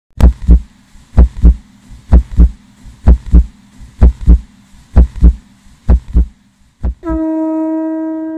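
A deep drum beaten in a steady heartbeat-like pattern of paired strokes, about one pair a second. About seven seconds in, a conch-shell trumpet sounds one long steady note.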